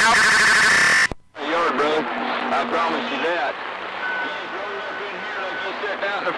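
CB radio audio: a loud, distorted transmission with a repeating pattern cuts off abruptly about a second in. After that, another station's voice comes through weaker and garbled, with a steady whistle over it for a couple of seconds partway through.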